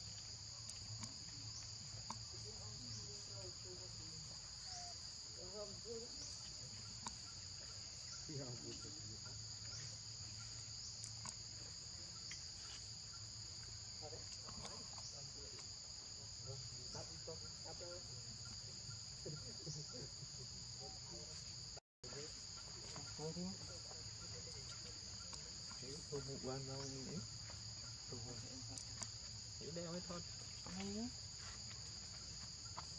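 Steady, high-pitched chorus of insects droning without a break, with faint ticks at regular intervals; it cuts out for an instant about two-thirds of the way through.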